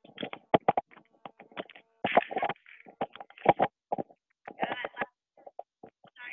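Voice audio over a video call breaking up into short, garbled fragments that cut in and out abruptly: the sign of a failing headset connection.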